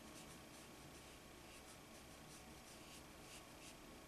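Faint, irregular soft strokes of a fine pointed watercolor brush across paper, over near-silent room tone.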